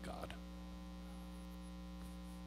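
Steady electrical mains hum, a low buzz with a ladder of even overtones, from the amplified microphone and recording chain. The tail of a man's spoken word is heard right at the start.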